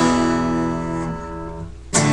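Acoustic guitar power chord, likely the D power chord, ringing out and slowly fading, then strummed again just before the end.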